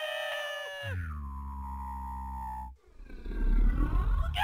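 Two cartoon characters screaming in fright in turn: a high, held scream for about a second, then a lower scream that sags slightly in pitch and cuts off suddenly near three seconds in. A loud low rumble follows near the end.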